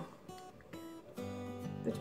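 Quiet background music on acoustic guitar, sustained notes with a fuller chord and low bass note coming in a little over a second in.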